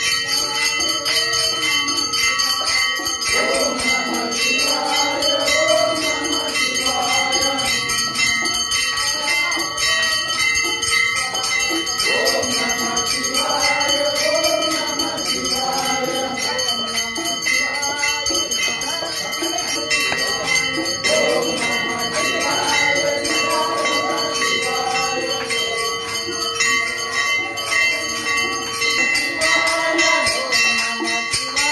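A group of men singing a devotional bhajan together, with continuous fast jingling of small hand cymbals or bells and a steady held drone tone underneath.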